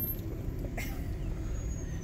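Car cabin noise while driving: the steady low rumble of engine and tyres heard from inside the car, with a brief soft hiss about a second in.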